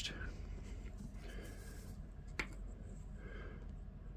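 Quiet hand-work with small wooden model strips on a paper layout: faint light rubbing and handling, with one short sharp click about two and a half seconds in, over a low steady hum.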